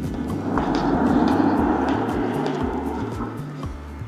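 Background music with a stepping bass line and light steady ticks, over which the noise of a passing vehicle swells up and fades away within about two and a half seconds.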